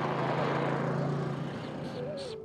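Four-wheeler (ATV) engine driving past close by, with a steady engine hum and a rushing noise that fade away about a second and a half in.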